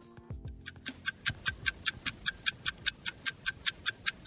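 Countdown-timer ticking sound effect for a quiz: a fast, even clock-like ticking, several ticks a second, starting about half a second in.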